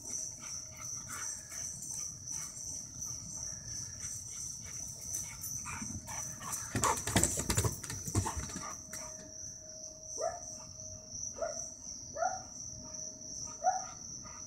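A dog giving four short, rising barks about a second apart near the end, over a steady high-pitched chirring of insects. About halfway through there is a burst of knocks and thuds.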